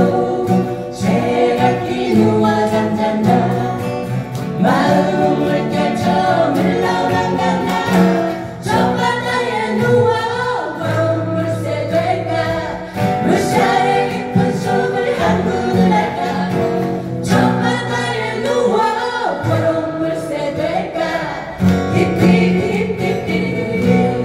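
Live song played on several strummed acoustic guitars, with a group of voices singing the melody together over them.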